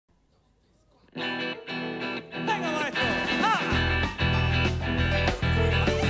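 Band music led by electric guitar, starting suddenly about a second in after near silence, with a deep bass part joining near the middle and a few sharp hits.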